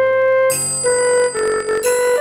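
A raag Yaman melody played back note by note in a notation app's synthesized flute voice: a single line of short held notes moving stepwise in a narrow range around C5.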